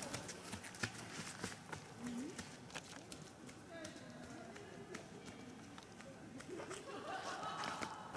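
Faint, distant people's voices, with scattered sharp clicks and crackles throughout.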